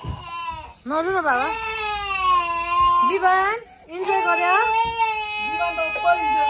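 A toddler crying in two long, loud wails. The first starts about a second in; after a short break the second begins about four seconds in and keeps going.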